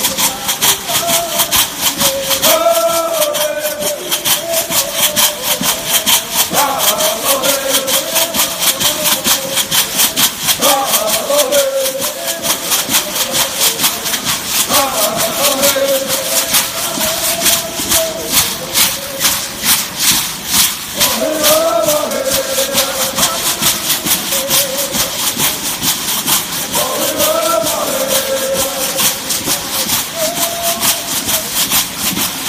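Stomp dance: shell-shaker rattles worn by the dancers shaking in a steady, fast, even rhythm. Short sung phrases from the singers come in every few seconds.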